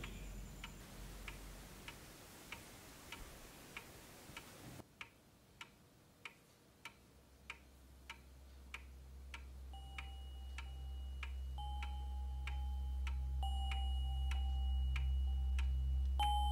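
A clock ticking steadily, about three ticks every two seconds. A low drone swells beneath it from about five seconds in, and held high musical notes join from about ten seconds in, building tension.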